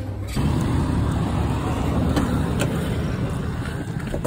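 Steady low outdoor rumble, with two light clicks about halfway through as a car's door handle is pulled.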